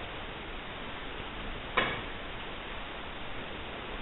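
Steady hiss of the recording with one short, sharp click a little under two seconds in.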